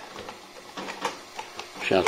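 Faint scraping and a few small clicks of a washing machine's plastic power plug being fitted into a wall socket.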